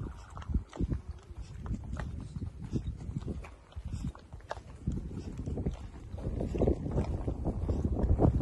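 Footsteps on a stone-cobbled plaza, about two steps a second, close to the microphone as the walker carries the camera. A low rumble grows louder in the last few seconds.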